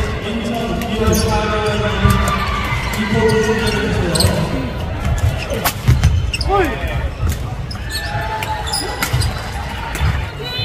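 Badminton doubles rally on a wooden sports-hall floor. Around the middle come a few sharp racket strikes on the shuttlecock and short squeaks of shoes on the floor. Voices carry in the hall underneath.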